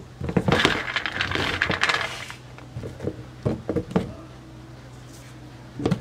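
White maize kernels being rubbed off the cob by hand and clattering into a steel plate, a dense patter of small hard hits lasting about two seconds, followed by a few scattered clinks and knocks on the metal.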